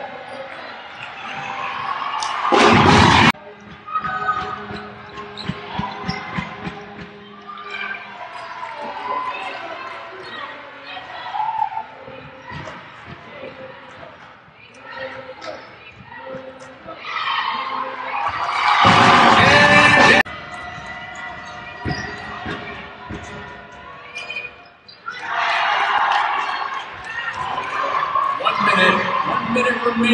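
Arena sound of a basketball game: a ball bouncing amid crowd chatter and music over the hall's speakers. Two loud surges of crowd noise, about three seconds in and about nineteen seconds in, each cut off abruptly.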